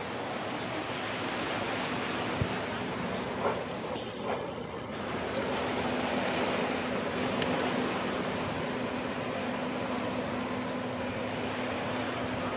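A Sounder diesel-hauled bilevel commuter train passing: a steady rush of wheels on rail under a constant low hum from the locomotive, with a few faint knocks in the first half.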